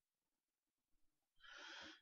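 Near silence, with a faint breath drawn in near the end.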